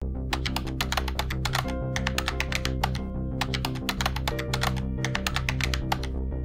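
Rapid keyboard typing clicks in quick runs with brief pauses, laid over a music bed of steady low held notes: a typing sound-effect music track accompanying text typed out on screen.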